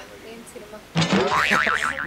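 A quiet second, then a sudden burst of a person's laughter whose pitch wobbles quickly up and down in a warbling zigzag.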